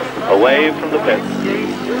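A man speaking, with a speedway motorcycle engine running steadily underneath.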